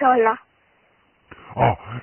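Speech over a telephone line. A short voiced exclamation falls in pitch at the very start, then after a pause a man's recorded voice begins speaking.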